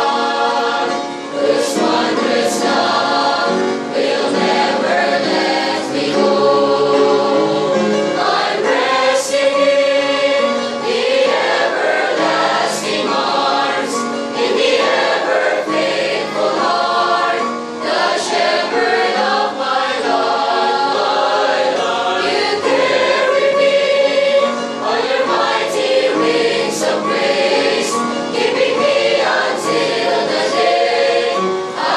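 A mixed choir of young women and men singing a Christian hymn, continuous and full-voiced.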